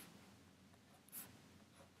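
Near silence: room tone, with one faint, short scratch of a writing stroke a little after a second in.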